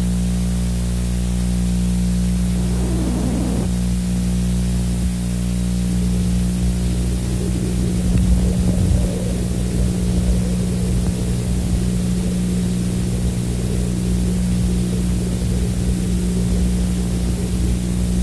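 A steady low hum made of several evenly spaced tones, over a constant hiss. A brief rough burst comes about three seconds in, and a rougher, fluttering rumble joins from about seven seconds on.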